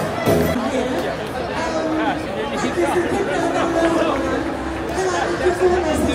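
Crowd chatter, many overlapping voices, over festival music with a heavy bass beat. The bass drops out about half a second in, leaving mostly voices, and comes back faintly near the end.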